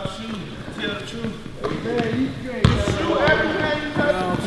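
A basketball bouncing on an indoor court floor several times, with one loud thump about two-thirds of the way in, under people talking.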